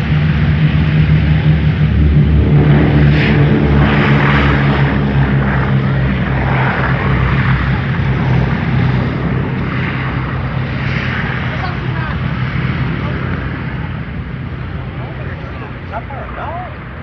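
A B-17G Flying Fortress's four Wright R-1820 Cyclone radial engines running steadily, loudest a few seconds in and fading gradually as the bomber moves away down the runway.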